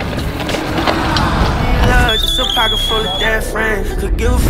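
Electric scooter's wheels rolling over grass, a steady rumble with wind on the microphone; about halfway through, a song with vocals comes in.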